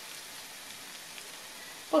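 Potato pancakes frying in shallow oil in a pan: a steady, even sizzle.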